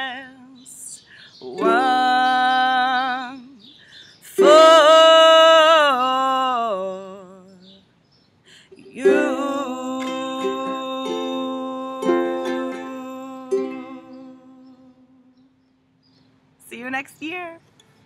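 Ukulele strummed under a woman's voice holding long, wavering sung notes as the song closes; the last chord and note ring out and fade away about fifteen seconds in. A brief laugh follows near the end.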